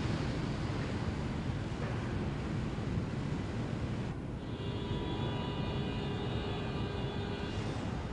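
Metro train rumbling in an underground station, with a steady whine of several tones that comes in about halfway through and fades out shortly before the end.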